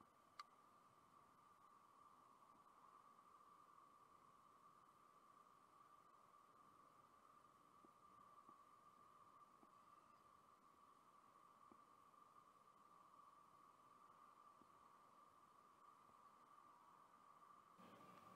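Near silence, with a faint steady high tone throughout and a single soft click shortly after the start.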